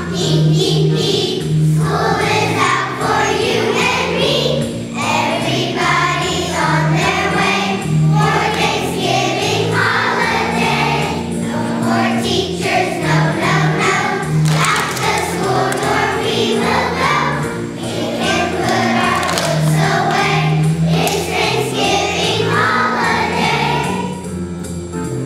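A large choir of young children singing together over an instrumental accompaniment with a steady bass line.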